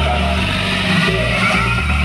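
Loud music with a heavy, stepping bass line, played through a truck-mounted stack of large loudspeaker cabinets.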